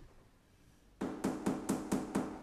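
A quick run of about six knocks on a coated wooden kitchen countertop, starting about a second in, as the top is knocked to find out what it is made of.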